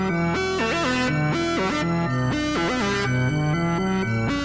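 Instrumental hip-hop beat: a plucked, guitar-like melody moving in short stepped notes over held bass notes.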